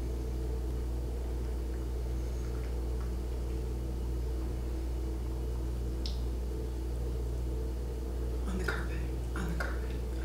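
A steady low hum of room tone, with a few faint soft clicks near the end.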